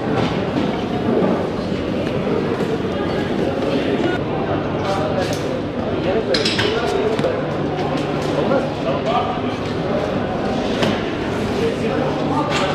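Indistinct chatter of many people echoing in a large hall, with occasional light clinks and knocks and, at times, a low steady hum.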